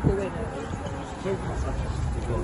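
Indistinct voices of people close by over a steady low rumble, with a single thump right at the start.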